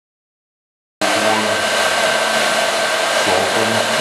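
Loud, steady rushing noise with a faint steady whine, like an electric blower or fan motor running. It starts abruptly about a second in, after dead silence.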